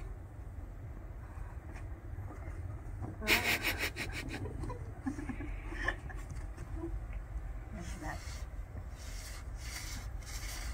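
Snow crunching and swishing as a person drops into it and sweeps arms and legs to make a snow angel: a cluster of rough crunches about three seconds in, then softer, scattered brushing.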